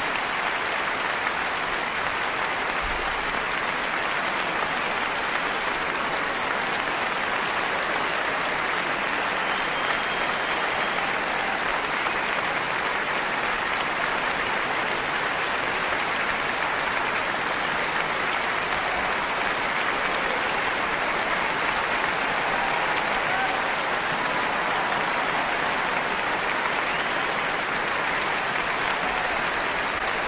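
Audience applauding, a steady unbroken wash of many hands clapping.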